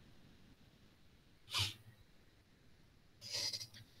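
A man's single short, sharp breath noise about one and a half seconds in, followed near the end by a softer intake of breath, over near silence.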